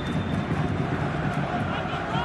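Pitch-side stadium ambience: a steady low rumble with faint distant voices, and a thin high tone that fades out about half a second in.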